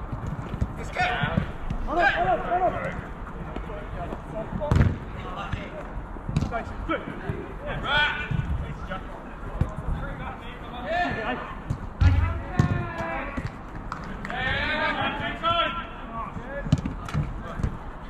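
Footballers shouting to each other across a small-sided pitch, with sharp thuds of the ball being struck, the loudest about five and twelve seconds in.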